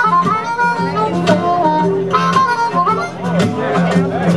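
Live acoustic blues: a harmonica plays an instrumental break with bending, sliding notes over a steady rhythm of strummed guitar with a repeating bass line.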